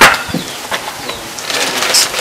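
A sheet of paper rustling and crackling as it is handled.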